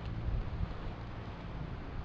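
Wind on the microphone: an uneven low rumble under a steady hiss.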